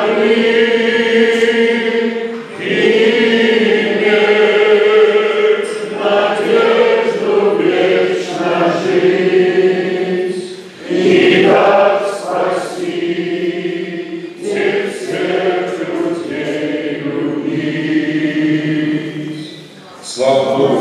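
Several men singing a hymn together, the lead voice amplified through a microphone, in long held phrases with short breaks between them. The singing ends just before the close.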